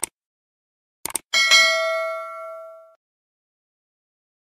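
Sound effects for a subscribe-button animation. A single mouse-style click, then a quick double click about a second in, followed by a notification-bell ding that rings out and fades over about a second and a half.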